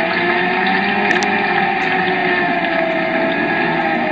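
Racing video game audio: a steady racing-car engine drone whose pitch drifts only slightly.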